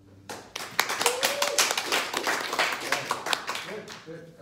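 Brisk hand clapping, about five claps a second, starting shortly after the cello falls silent and running until near the end, with a brief vocal sound about a second in.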